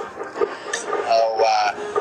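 A man's voice drawing one sound out into a long, held, sung-sounding note in the second half, heard over a phone live-stream connection.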